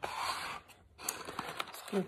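A person's breath, a noisy draw of air lasting about half a second, followed by a few faint clicks.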